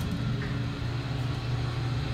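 Steady low hum inside an elevator car, with a faint click about half a second in.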